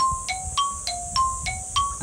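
A short edited-in jingle of plinking, mallet-like notes, alternating between two pitches, low and high, at about three to four notes a second: a suspense cue held before the verdict on a guessed answer.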